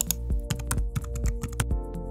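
Computer keyboard typing: a quick run of sharp key clicks as a six-digit verification code is entered, over background music.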